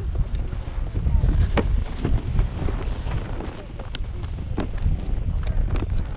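Wind buffeting an action camera's microphone, a steady low rumble, with a few separate sharp clicks as gloved hands work the snowboard bindings.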